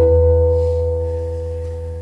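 Background music: one sustained keyboard chord with a deep bass note, starting suddenly and fading slowly.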